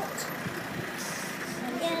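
A motor vehicle running close by in a busy street, under a background of voices, with a person starting to speak near the end.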